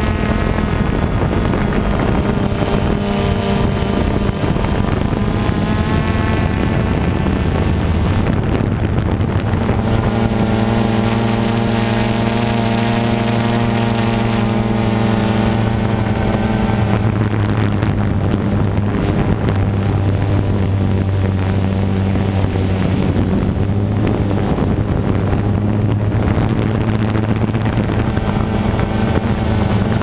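DJI Phantom 2 quadcopter's electric motors and propellers in flight, a loud steady buzzing whine picked up by the onboard GoPro, its pitch shifting slightly now and then as the motors change speed.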